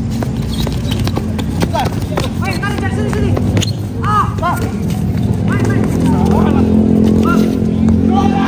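Futsal play on a cement court: the ball is kicked and knocks about in a string of sharp knocks, with players' short calls. Underneath is a steady low drone that grows louder in the second half.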